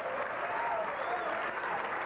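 Theatre audience applauding as a dance number ends, with a few voices shouting among the clapping.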